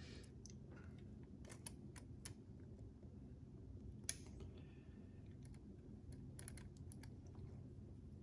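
Faint, scattered light clicks of small plastic and metal parts being handled as a new microswitch and its push-on retaining buttons are fitted to a plastic convertible-top latch housing, with one sharper click about four seconds in and several close together near the end, over a low steady hum.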